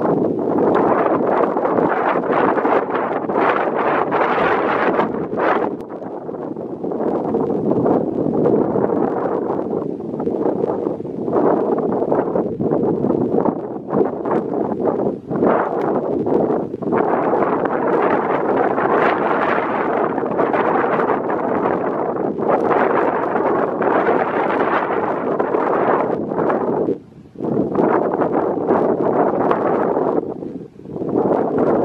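A flock of greater flamingos calling together: a loud, continuous honking chatter with brief lulls, one deep drop near the end.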